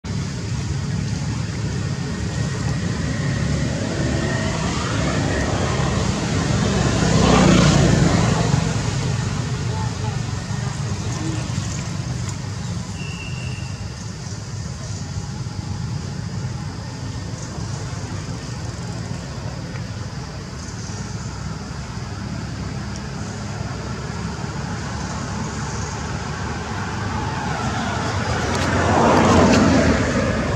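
Outdoor background of road traffic: a steady low rumble that swells and fades twice, about seven seconds in and near the end, as vehicles pass, with indistinct voices.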